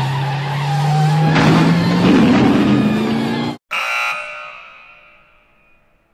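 Car engine revving up with a slowly rising pitch over tyre noise, cut off abruptly at about three and a half seconds. A ringing tail follows and fades out over about two seconds.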